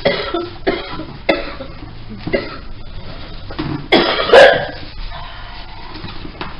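A woman coughing harshly in a series of about five separate coughs, the loudest about four seconds in.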